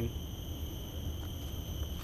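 Steady high-pitched insect chorus from tropical vegetation, several even tones that do not change, over a low rumble.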